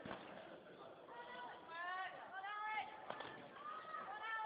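Faint raised voices of people calling out, with two brief knocks, one at the start and one about three seconds in.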